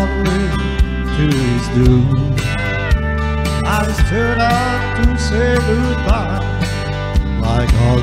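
Instrumental break in a country song: electric guitar plays melodic lines with bent notes over bass and a drum beat that hits about once a second.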